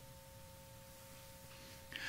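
Near silence, with two faint steady tones held throughout.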